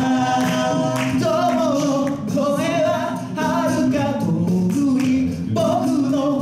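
A male a cappella group of six voices singing live through microphones. A sung lead melody rides over held backing harmonies, with a steady rhythmic beat from vocal percussion.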